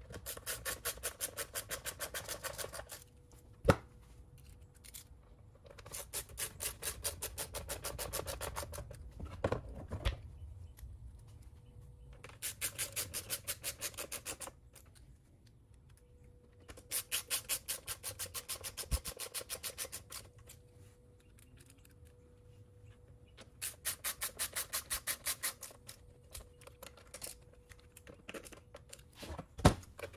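Ratcheting screwdriver driving screws into a string trimmer's plastic starter recoil housing: five runs of rapid, evenly spaced ratchet clicks, each two to three seconds long, with a couple of sharp single knocks between.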